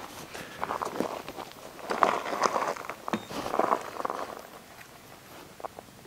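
Footsteps on grass strewn with dry fallen leaves, an irregular run of steps with leaf rustle that dies down in the last second.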